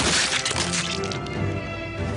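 A sudden burst of cracking and breaking sounds from a fight-scene sound effect, loudest in the first half second and thinning into scattered cracks over the next second, over dramatic background music.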